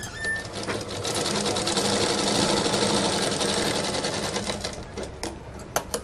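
Sewing machine stitching blouse cloth in a fast, even run of stitches that starts about a second in and stops near the end, followed by a few sharp clicks.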